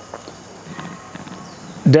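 Quiet outdoor background with a few faint ticks and a faint thin tone, then a man starts speaking near the end.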